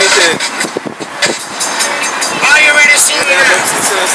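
Street traffic noise with a voice heard over it, the voice loudest in the second half.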